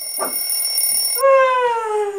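An alarm clock rings with a steady high tone that cuts off just over a second in. A girl then lets out a long, loud yawn that falls slowly in pitch.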